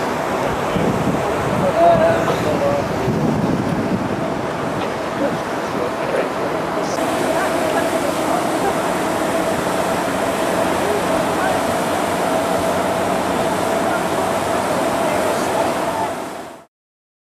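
Wind on a camcorder microphone: a steady rushing with a constant faint hum under it, the top end changing slightly about seven seconds in.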